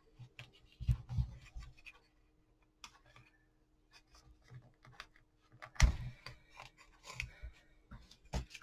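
Hands working a ribbon bow on a wooden craft plank: light rubbing and small clicks, then a few soft knocks in the second half.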